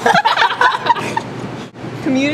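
Young women laughing hard in quick, choppy bursts, cracking up during a take; the laughter weakens after about a second and dips near the end.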